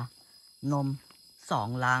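A man speaking Thai over a steady, thin, high-pitched insect drone from the surrounding vegetation.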